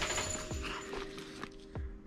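Handling noise from a canvas military gas-mask carrier being opened and a rubber strap pulled out: fabric rustling with two sharp clicks, one about half a second in and one near the end.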